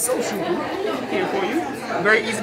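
Several people talking over one another: the chatter of a room full of people, with no single clear voice.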